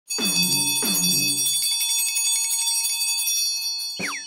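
Brass hand bell rung rapidly, its clapper striking many times a second so the high ringing tones carry on and fade out near the end. Two lower falling tones sound under it in the first second and a half.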